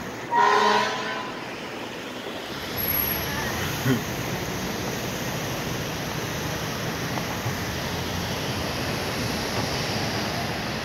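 A short air-horn blast, about a second long, sounds near the start. Then comes the steady noise of a fire engine's engine and street traffic as it drives away.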